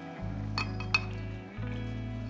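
Two light metallic clinks of a steel bowl being picked up and handled, about half a second and a second in, the second one sharper, over steady background music.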